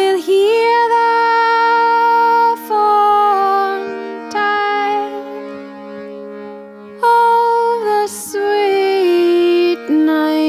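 A woman singing an English folk song in long, drawn-out notes with a slight waver, over steady sustained accompanying tones. There are two loud phrases with a softer stretch between them in the middle.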